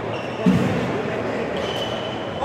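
Sports-hall background of people's voices, with one dull thud about half a second in and short high squeaks, as of shoes on the court floor.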